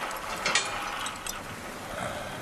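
Metal rattling and creaking of an iron cage and its fittings, with a few brief clicks about half a second and a second and a quarter in.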